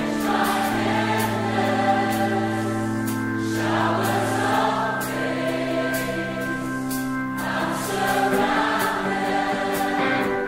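Church worship choir singing a gospel-style worship song in long, held phrases over sustained chords, with light percussion ticking along. The chords change about a second in, near the middle and near the end.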